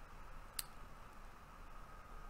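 A single short click about half a second in, over faint hiss and a faint steady hum.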